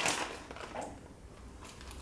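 Faint rustling and a few soft crackles from a plastic grated-cheese packet and from hands pressing toppings down onto flatbread pizzas on a paper-lined tray, fading into quiet room tone.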